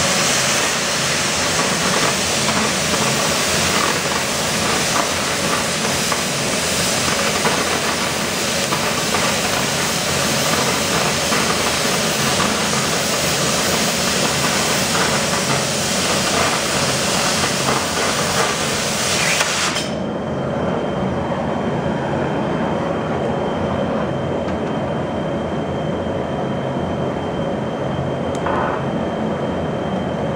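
Oxy-acetylene cutting torch with a 1½-inch-rated tip cutting through one-inch steel plate: a loud hiss of the cutting oxygen jet with an irregular sputtering, the sign of the right travel speed for a clean cut with very little slag. About two-thirds of the way in the cutting oxygen shuts off suddenly, leaving the softer steady hiss of the preheat flame.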